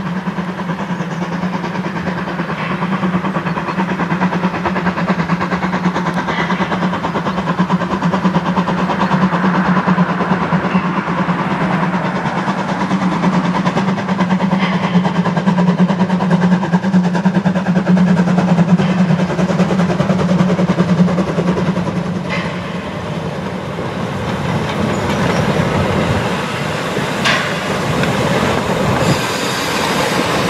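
Narrow-gauge steam train running past with its coaches, a steady low rumble of wheels on the rails with clicking over rail joints. A few sharper clicks come near the end.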